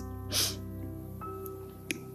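Soft new-age background music with held, bell-like tones. About a third of a second in, a woman gives one short, sharp exhale of breath, and a faint click follows near the end.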